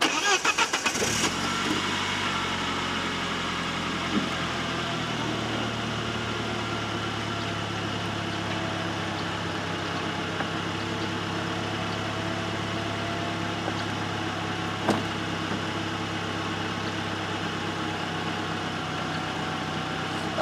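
2000 Saab 9-3 convertible's engine cranks and catches, then idles steadily while the powered soft top rises, its hydraulic pump running underneath. A small click about four seconds in and a sharper one near fifteen seconds come from the roof mechanism.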